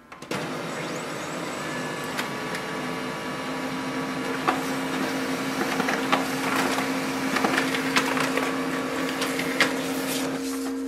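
Brother HL-L2405W laser printer printing, a steady mechanical whirr with a low hum starting just after the beginning, and a few sharp clicks as the paper feeds through.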